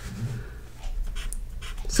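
Felt-tip marker drawing short strokes on paper, a faint scratching that comes in a few quick strokes in the second half.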